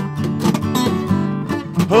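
Acoustic guitars strumming chords in a steady rhythm, with no singing.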